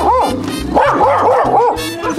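A dog barking repeatedly, about three barks a second, over background music with a steady bass line.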